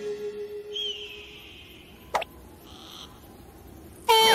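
Sparse cartoon sound effects: a held music note fades away while a high whistling call sounds for about a second. A single sharp click comes about halfway through, then a brief hiss.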